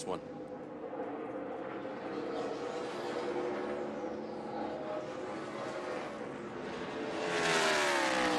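NASCAR Xfinity Series stock car V8 engines running flat out around the track, a steady drone. Near the end a car passes close, louder, its pitch falling as it goes by.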